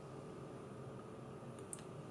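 Quiet room tone: a faint steady hum, with one faint tick near the end.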